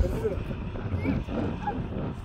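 Wind rumbling on the microphone, with faint voices.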